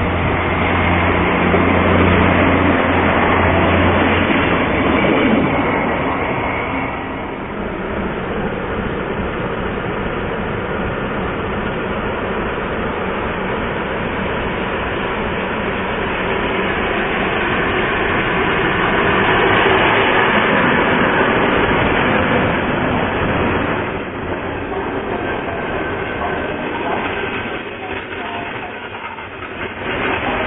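Diesel trains moving through a station: a diesel engine's low, steady drone for the first few seconds, then the continuous running noise of train wheels on the rails.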